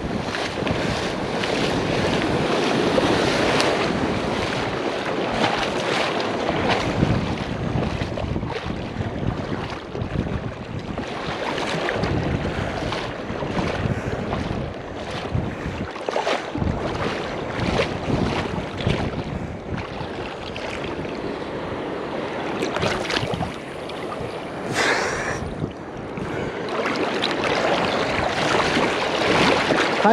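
Ocean surf washing in the shallows, with wind buffeting the microphone in uneven gusts.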